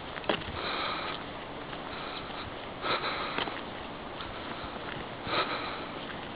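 Heavy breathing of a walker close to the microphone, a deep breath every two seconds or so, from the effort of climbing a steep track uphill.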